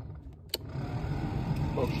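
A click from the heater fan-speed slider about half a second in. The heater blower fan then runs up on its third speed as a steady rush of air that grows louder. This blower cuts in and out intermittently, but at this moment it is blowing well.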